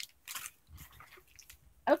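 Faint crinkling of a plastic package being handled, a few short crackles in the first second.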